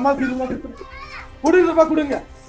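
Several people's voices in an agitated confrontation, talking over one another, with a higher-pitched voice about a second in and a louder voice near the end.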